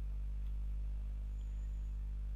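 Steady low background hum with no other sound, and a faint thin high tone for about half a second near the end.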